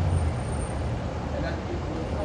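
Low rumble of city street traffic, a heavy vehicle's engine running close by, easing a little after the first half second. Faint voices sit underneath.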